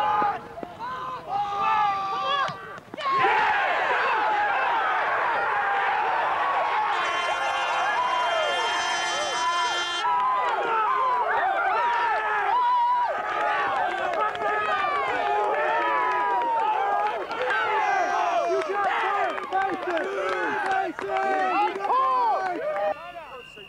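Many voices shouting and cheering at once from a crowd of players and spectators, swelling suddenly about three seconds in and staying loud. A steady buzzing tone sounds over it for about three seconds near the middle.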